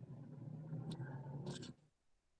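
Faint scratching and rustling of writing on paper over a low steady hum, heard through a video-call microphone, cutting off abruptly near the end.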